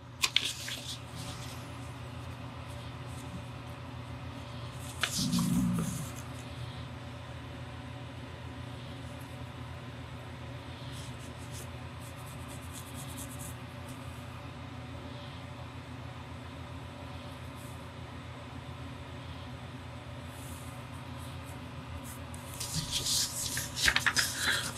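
Faint scratching of a fine-tip pen drawing on paper over a steady low hum, with a soft bump about five seconds in. Near the end the paper sheet rustles as it is lifted and handled.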